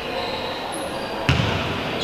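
A basketball bounces once on the sports-hall court about a second in, over background voices in the hall.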